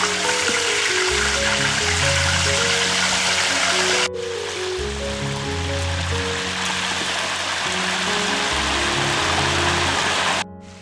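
Whole mud crabs deep-frying in a large wok of hot oil, a steady, dense sizzle, with background music playing over it. About four seconds in the sizzle suddenly turns quieter and duller.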